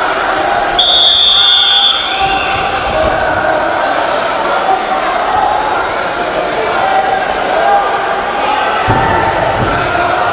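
Referee's whistle: one steady, shrill blast about a second long, just after the start, stopping the wrestling. Crowd chatter echoes in a large hall throughout, with a thump near the end.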